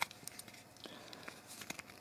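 Faint handling noise with a few small scattered clicks from the plastic parts of a Transformers Grimlock action figure being fitted together by hand.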